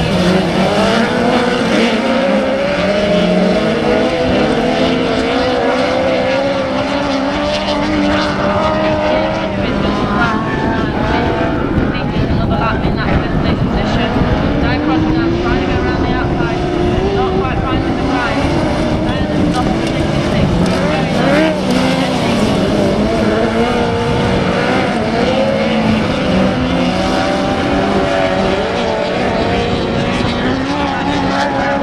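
Engines of several autograss special buggies racing on a dirt oval, revving up and down as they go round the track.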